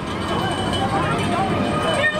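The Bluesmobile, a black-and-white sedan, driving slowly by with its engine running low, amid indistinct voices of people nearby.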